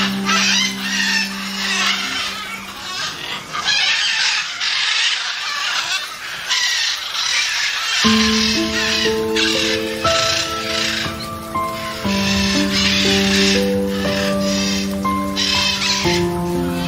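Background music of held notes, layered over repeated harsh squawks of blue-and-gold macaws. The music thins out for a few seconds in the middle, leaving the calls on their own.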